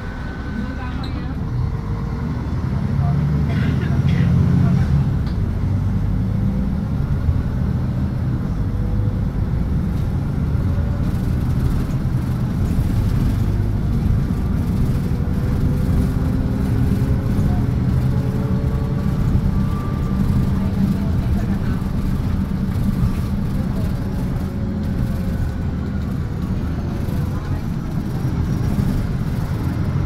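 Steady low rumble of a bus's engine and road noise heard from inside the cabin, with a faint whine that rises and falls as it drives along.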